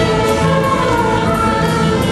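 A youth orchestra of clarinets, flutes, saxophone, bassoons and guitars playing a lively tune, the wind instruments holding sustained melody notes over a steady rhythmic bass.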